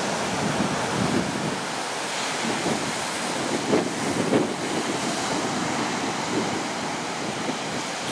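Ocean surf from a 4-to-5-foot swell breaking on a sandy beach: a steady, continuous wash of waves.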